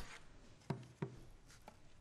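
Quiet handling of a powered respirator blower unit and its belt: two faint taps a third of a second apart, then a tiny click.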